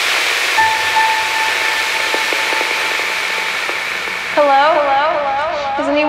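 Electronic dance track intro. A wash of noise fades down while a steady synth tone holds from about half a second in. At about four seconds a warbling pitched sound enters, wobbling in pitch several times a second.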